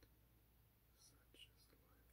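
Near silence: room tone with a low steady hum, and a few faint, brief hissy sounds between one and two seconds in.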